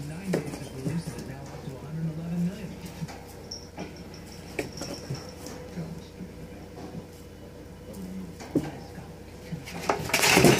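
Light scattered knocks and clinks from a rabbit moving about in its wire cage with hanging metal bowls, over faint indistinct voices and a steady low hum.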